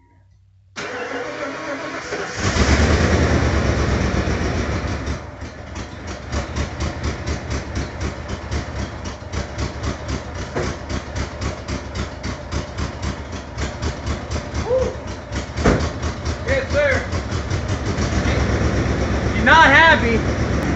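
A 1994 Ford F-150's 302 V8 is cold-started in deep cold after months of sitting. The starter cranks briefly, the engine catches about two seconds in and runs up loudly, then eases into a rough idle with a steady, even pulse. It is not very happy to start.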